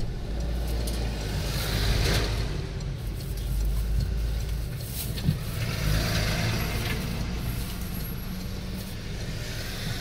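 Low rumble of a car heard from inside the cabin as it moves slowly in traffic, with two other vehicles swelling past close by, about two seconds in and again around six seconds in. A brief sharp knock sounds about five seconds in.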